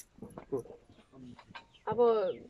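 Chickens clucking faintly in short, scattered calls, with one louder call just before the end.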